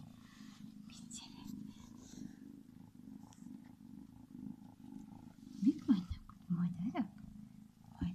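Gray tabby kitten purring steadily, close to the microphone.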